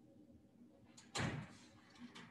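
A single thud about a second in, just after a faint click, with a short reverberant tail.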